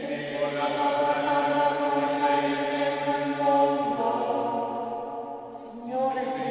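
Slow liturgical hymn sung with long held notes, moving to a new note about four seconds in.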